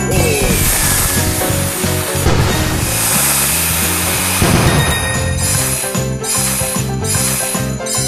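Slot game audio: Christmas-style background music with jingle bells, overlaid by a long rushing sound effect in the first half as the cracker feature plays. A run of short hits follows in the second half as fish money symbols land on the reels.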